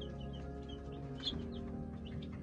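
Baby chicks peeping: a run of short, high chirps, one louder than the rest a little past halfway, over steady background music.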